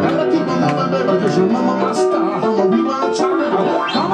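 Live rock and roll played on a stage piano with a band behind it, pounding chords over a steady beat. Near the end comes a glissando swept across the keys.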